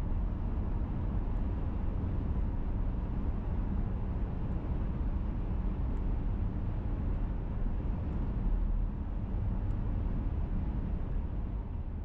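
Steady road noise heard inside a moving car: a low rumble of tyres on the road and engine, with no sudden events.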